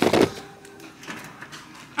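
A short knock as a handheld camera is set down on a wooden kitchen counter, then quiet room tone with a faint steady hum.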